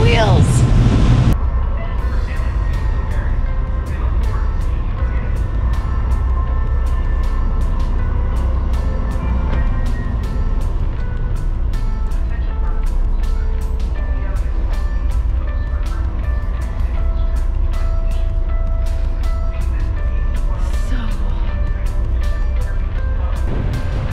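Background music with a steady beat over a low, steady rumble. In the first second or so wind buffets the microphone, and then it cuts away.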